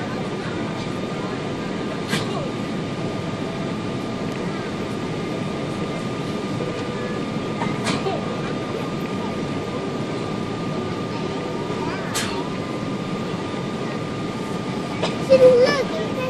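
Steady cabin noise inside a Boeing 777-200 airliner on approach: an even rush of engine and airflow noise with a thin steady whine, broken by a few brief clicks. A short, louder pitched sound comes near the end.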